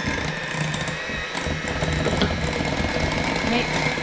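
Electric mixer running steadily as it whips steamed delicata squash with milk and butter into a mash.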